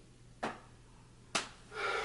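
Two short, sharp clicks about a second apart, then a soft breathy sound starting near the end.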